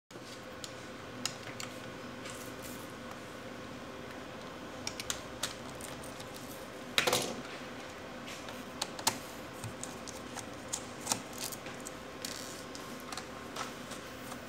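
Plastic clips of an HP 245 G8 laptop's bottom cover clicking into place as fingers press along its edge: scattered sharp clicks, the loudest about seven seconds in.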